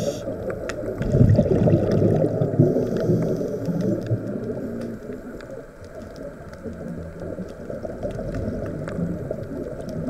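Underwater sound of a scuba diver's exhaled bubbles from the regulator, gurgling, loudest from about a second to four seconds in, then fainter.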